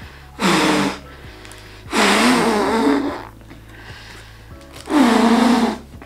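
Three hard, breathy huffs blown through a double-layer cloth face mask at a lighter flame, about two seconds apart, the middle one the longest. Quiet background music plays underneath.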